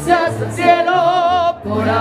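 Live mariachi music: a female singer holds a long note with a wavering vibrato over low bass notes, breaking off briefly just past the middle before singing on.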